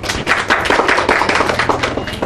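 A group of people applauding: many quick hand claps that start just after the beginning and thin out near the end.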